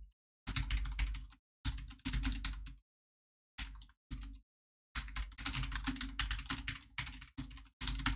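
Typing on a computer keyboard: four bursts of quick keystrokes, the longest lasting about three seconds near the end, with dead silence between bursts as a microphone noise gate closes.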